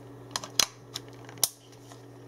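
Three small, sharp clicks and taps from handling the CM Storm Pulse-R headset's detachable cable and its plastic micro USB plug, over a steady low hum.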